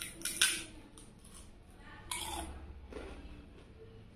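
Crunchy bites and chewing of fried papad: two loud crackling crunches, the first under a second in and the second about two seconds in, with a few smaller crackles between.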